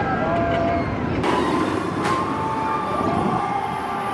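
Riders screaming on a steel roller coaster, several voices wailing at once over the rumble of the train. The sound changes abruptly about a second in.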